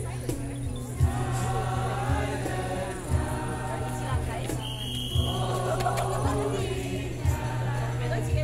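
Choir of carollers singing a Christmas carol, over a steady low accompaniment with a soft beat about once a second.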